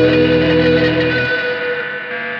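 Blues ballad on electric guitar run through effects, over a backing part, holding a chord. The low bass notes stop about a second and a half in and the guitar rings on, slowly fading.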